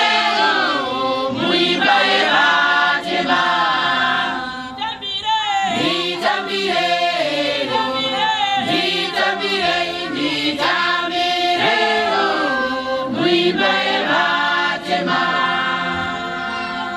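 A Johane Masowe apostolic congregation singing a hymn in chorus without instruments, many voices moving together through a sustained melody.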